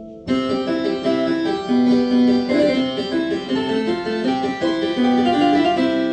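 The harpsichord voice of a Yamaha TransAcoustic upright piano, a digital sound played out through the piano's own soundboard: a short melodic phrase on the keys, bright and rich in overtones, starting suddenly and ending on notes left to ring and fade.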